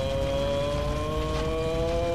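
A single sustained tone with overtones, slowly rising in pitch, from the soundtrack of a tokusatsu transformation scene.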